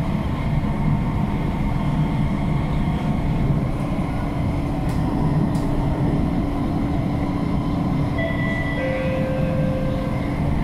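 C151C metro train running at speed, heard from inside the passenger car: a steady rumble of wheels and running gear with a constant hum. A few higher whining tones come in near the end.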